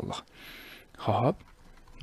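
A man's voice in a pause of speech: a soft hiss, then one short spoken syllable about a second in.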